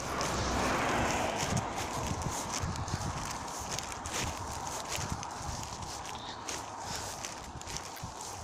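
Footsteps on concrete paving blocks, walking at about two steps a second, each step a hard clip. A broad rushing noise swells about a second in, then fades under the steps.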